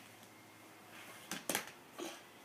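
Toy monster figures being handled and moved on a bed: a brief pair of soft knocks and rustles about a second and a half in, against faint room sound.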